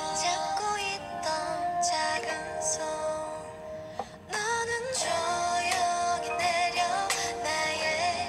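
A female-sung pop song from a YouTube video playing at full volume through the Sony Xperia XZ1 Compact's stereo speakers, with little bass. The singing breaks off briefly about four seconds in, then carries on.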